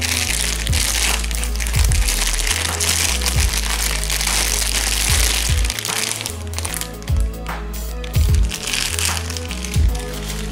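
Thin plastic bag crinkling as a toy airplane model is handled and pulled from it, heaviest through the first half and again briefly near the end, over background music with a steady bass line.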